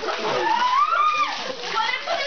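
Water splashing from a garden hose sprayed over people, with shrieking and shouting voices; one long, high shriek rises and falls about half a second in.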